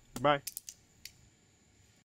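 Butterfly knife (balisong) handles and blade clicking against each other as it is flipped in the hand: a quick run of four or five sharp clacks about half a second to a second in.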